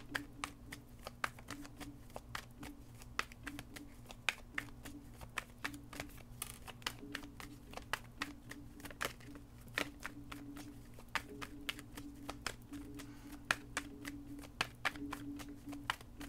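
Tarot deck being shuffled by hand: a long run of quick, irregular card clicks and slaps as the reader shuffles until cards pop out.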